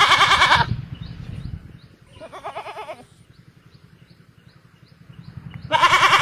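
Goats bleating in turn: a loud, wavering bleat at the start, a quieter one about two seconds in, and another loud bleat near the end.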